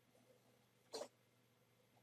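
Near silence, broken about a second in by one short squeak of a felt-tip pen drawing a line on paper.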